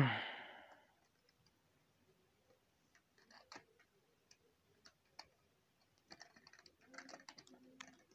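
Small plastic-and-metal clicks and taps from a toy Jeep pickup model being handled on a carpet as its parts are moved. They come sparsely at first and then more often in the last couple of seconds. A loud, short thump with a brushing tail opens the clip.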